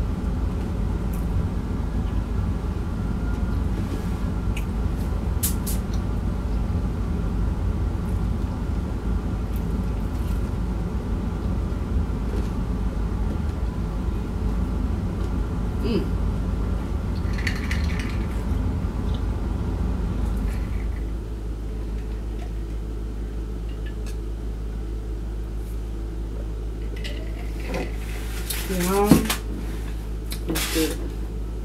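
Eating fried chicken: scattered crunches and clicks over a steady machine hum, which drops to a quieter hum about two-thirds of the way through. A short vocal sound near the end.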